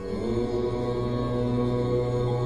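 Devotional music: a steady, droning mantra chant that starts abruptly and holds its notes.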